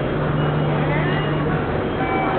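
Busy railway station concourse ambience: a steady wash of crowd voices and noise, with a steady low hum that stops about one and a half seconds in.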